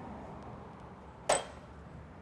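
One short, sharp metallic clink a little past halfway, with a brief ring, from a metal spice shaker knocking as dry rub is shaken over ground pork. Faint steady background noise throughout.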